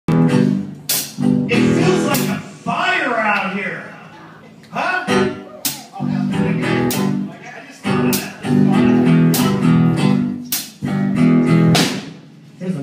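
Live band playing a song's instrumental opening: guitar chords over bass guitar and a drum kit, with sharp drum and cymbal hits through the phrase.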